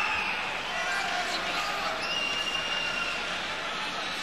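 Indoor arena crowd noise with long, high, steady whistles, one at the start and another about two seconds in.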